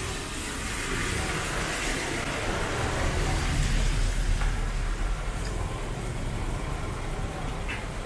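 Traffic passing on a wet road: a coach bus and cars going by close, tyres hissing on the wet asphalt, with a low engine rumble that swells a few seconds in.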